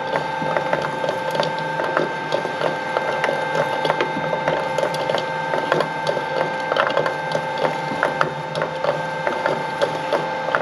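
A Filamaker shredder running with a steady whine from its drive. Its cutter discs give irregular sharp clicks and cracks, several a second, as they bite and scrape at steel oil filter cans.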